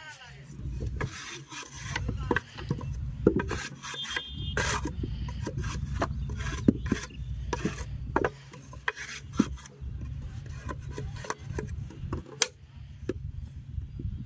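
Wooden brick moulds and wet clay being worked by hand on sandy ground: rasping scrapes with scattered sharp knocks and slaps as bricks are moulded and turned out, over a steady low rumble.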